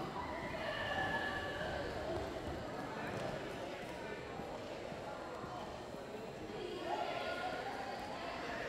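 Gymnasium sound of a volleyball rally: players and spectators calling out, with the thuds of the ball being played and footfalls on the court, echoing in the hall.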